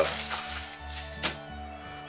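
Background music with a low, pulsing bass line, and a single faint click just past a second in.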